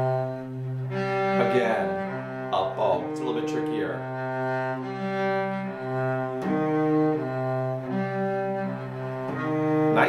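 Cello played with the bow: a slow phrase of held, connected notes, each lasting about a second, played as a slur.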